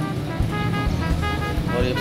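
Background music with a steady beat and held melody notes; a voice begins speaking right at the end.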